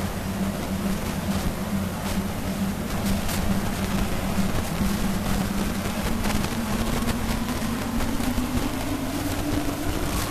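Steady low hum and room noise with no speech, the hall held silent for meditation. A fainter tone slowly rises in pitch over the last few seconds, with a few soft clicks.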